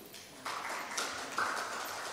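Faint applause from an audience, starting about half a second in, as a guest is called to the stage.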